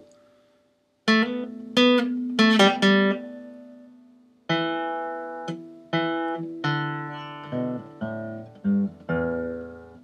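Acoustic guitar picking a phrase of single notes, with a quick pull-off among them. The notes start about a second in: four come close together, then after a pause a slower run of about eight, each one ringing out.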